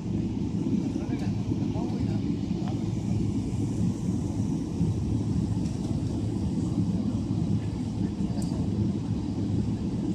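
Cabin of a Boeing 777-300ER while it taxis: a steady low rumble from its GE90 turbofan engines and the airframe.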